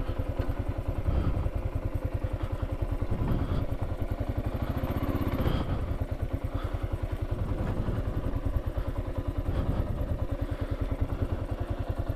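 Kawasaki KLR 650's single-cylinder four-stroke engine running steadily as the motorcycle is ridden slowly, an even beat of firing pulses.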